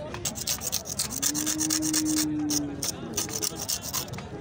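A steel file scraping back and forth across the tip of a cow's horn in rapid strokes, several a second, as the horn is trimmed. A single steady tone is held for nearly two seconds in the middle.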